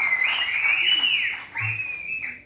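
Whistling: three drawn-out, high whistles, each gliding up and down in pitch.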